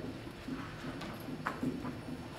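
Dry-erase marker writing on a whiteboard: a series of short strokes and taps as a word is written.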